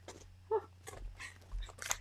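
Clear plastic page protectors in a ring-binder scrapbook album rustling and crinkling in short bursts as pages are turned, with a couple of soft thumps from handling the album about halfway through.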